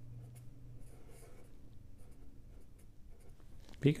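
Felt-tip marker writing on paper: faint scratching strokes as numbers are written and circled, over a faint low hum.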